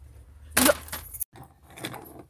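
Brief rustling, clinking handling noise of a plastic toy train being moved over a donut box's clear plastic lid, with a short spoken "look". The sound cuts off abruptly a little past a second in.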